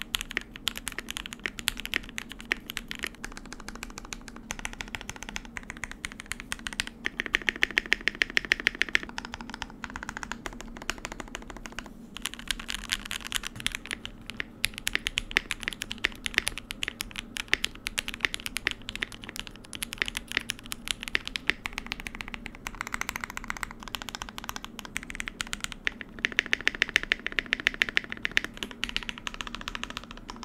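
Fast typing on a custom 60% mechanical keyboard: an acrylic Tofu60 case, a polycarbonate plate, and lubed and filmed Everglide Aqua King linear switches. It comes as runs of quick keystrokes with short pauses. Partway through, the keycaps change from a cheap no-brand PBT clone GMK set to genuine GMK Laser keycaps.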